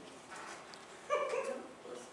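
A short, voice-like cry about a second in, standing out over the quiet of the room.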